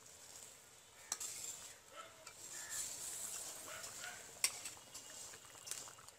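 A metal ladle stirring fish curry in a large metal pot, clinking sharply against the pot about a second in and again, louder, about four and a half seconds in, over the hiss of the curry boiling.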